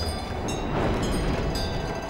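A steady low rumbling drone with faint high ringing tones over it, swelling slightly about half a second in: a dramatic sound effect in a TV drama's soundtrack.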